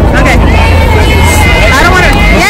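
A person's voice holding a long note over a loud, constant low rumble.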